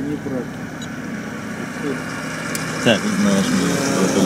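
Steady running noise of a car idling, heard from inside its cabin, under brief low men's voices.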